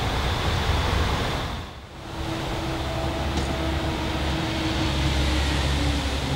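A TW 6000 Stadtbahn light-rail train runs past with a steady low rumble of wheels and running gear. About two seconds in, the sound briefly drops away at an edit. It then comes back as the same train running farther off, with a low steady whine over the rumble.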